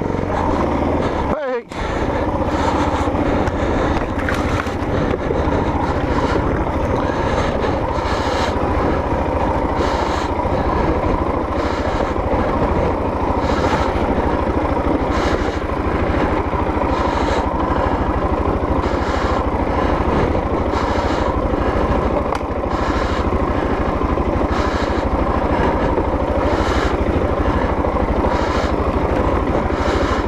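Single-cylinder dual-sport motorcycle engine running steadily at low to moderate revs while the bike picks its way over a rough dirt track, with a short break in the sound about a second and a half in.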